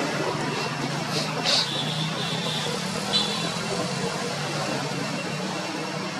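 A motor engine running steadily nearby, with a few short, high chirps about a second and a half in and again about three seconds in.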